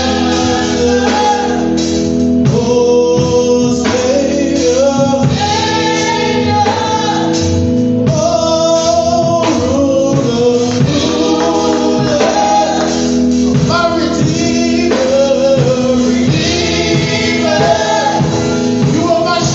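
Gospel song sung by several men and women together, with guitar accompaniment.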